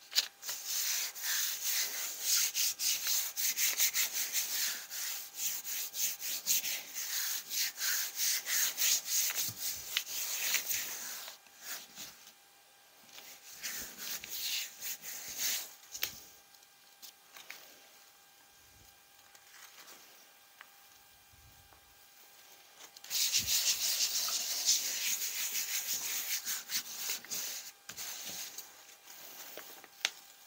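Hands rubbing the back of a sheet of paper laid on a gel printing plate to transfer the paint, a papery swishing of quick back-and-forth strokes. It comes in three spells: a long one of about ten seconds, a short one a few seconds later, and another from about two-thirds of the way in, with quiet pauses between.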